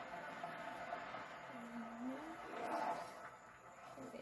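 A person's voice over steady background noise: one drawn-out vocal sound about halfway through, with a short louder moment near the end.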